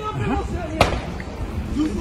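Voices talking with a single sharp bang a little under a second in.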